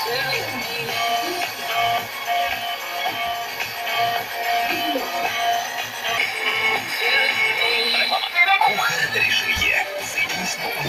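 Music with a voice, from an FM broadcast station received on a Philips car cassette radio tuned to 91.6 MHz and heard through its speaker.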